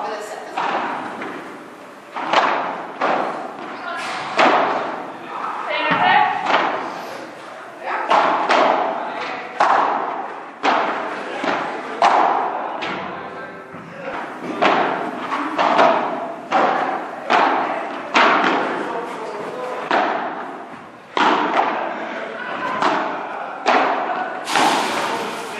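Padel rally: sharp hits of padel rackets on the ball and the ball rebounding off the court's glass walls and floor, coming about one or two a second and echoing in a large indoor hall.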